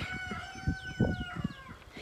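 A rooster crowing once: one long call that holds steady, then falls in pitch near the end.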